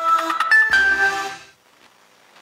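Short radio-station jingle: a few bright electronic notes stepping in pitch, ring-tone-like, ending about a second and a half in.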